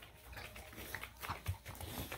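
Irregular soft knocks and scuffs of a woman and a dog moving about on foam floor mats. The sharpest knock comes about one and a half seconds in.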